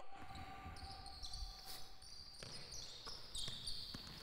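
Faint basketball practice sounds on a hardwood gym floor: sneakers squeaking and a few knocks of the ball, from passes, as players move without dribbling.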